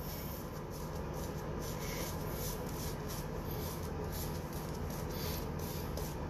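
Razor blade scraping stubble through shaving lather: a run of short scraping strokes, a few each second.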